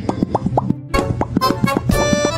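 A rapid string of Pop Cat meme 'pop' sound effects, short cartoonish mouth-pops coming about seven a second. Each pop is a quick downward blip. They break off shortly before a second in, and a music track with a steady beat comes in.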